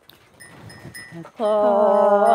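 Karen 'so' folk singing: a singer starts a long held note with a wavering pitch about one and a half seconds in, after a quiet stretch with faint ticking.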